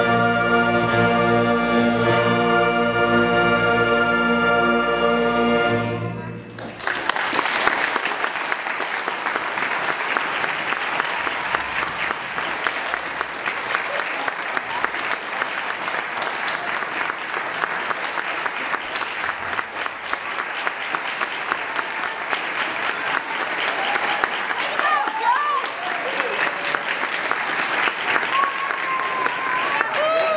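A school wind band holds its final chord, which cuts off about six seconds in. Then the audience applauds steadily, with a few voices calling out near the end.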